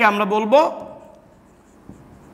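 A man's voice trailing off in the first second, then a marker pen writing faintly on a whiteboard, with a light tap near the end.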